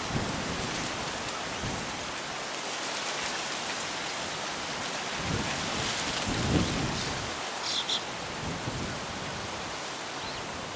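Wind buffeting the microphone: a steady rushing hiss with low gusts rumbling over it, the strongest about six and a half seconds in. A bird gives two brief high chirps about eight seconds in.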